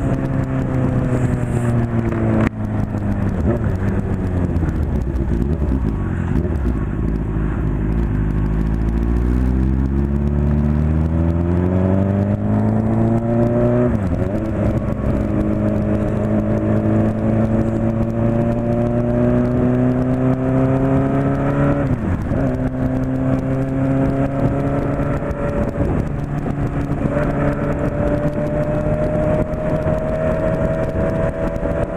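Honda CB600F Hornet's inline-four engine heard from the rider's seat: revs fall for about ten seconds as the bike slows, then climb again under acceleration, with two short breaks in pitch where it shifts up a gear. Wind rush on the microphone throughout.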